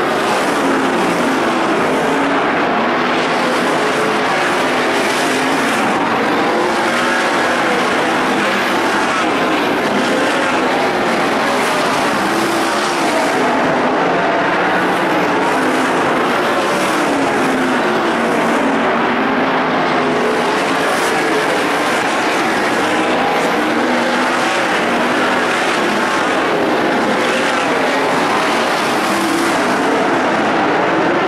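A field of winged sprint cars racing on a dirt oval, many engines at full throttle at once, their overlapping pitch rising and falling continuously as the cars pass through the turns and down the straights.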